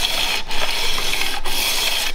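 Steel edge of a cut-off bandsaw blade rubbed back and forth on 120-grit sandpaper over a hard surface: a gritty scraping in strokes about a second long, with brief breaks between them. The edge is being dressed flat to a true 90 degrees and cleared of nicks so the blade can serve as a cabinet scraper.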